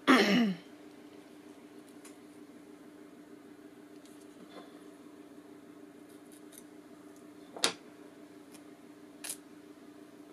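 Small craft snips cutting lace: two sharp snips about a second and a half apart near the end, the first the louder, with a few fainter clicks of handling before them.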